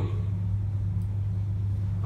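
A steady low hum with no change in pitch or level.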